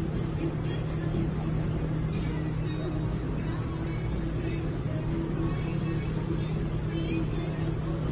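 A steady low hum runs throughout, with faint, indistinct voices in the background.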